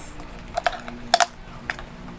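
A few sharp plastic clicks and crackles as a small sealed plastic dessert cup's lid is worked at by hand; the lid is stubborn and hard to open. The loudest snap comes just past the middle.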